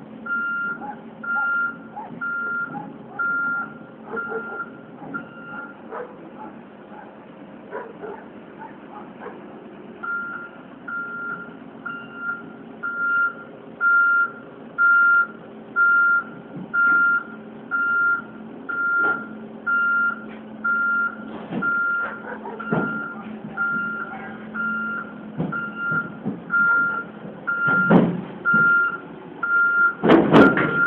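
Heavy-machine backup alarm beeping about once a second, stopping for a few seconds near the start and then resuming, over a diesel engine running. A few knocks sound near the end.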